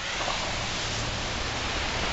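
Steady, even hiss of a nor'easter outdoors: wind and falling snow.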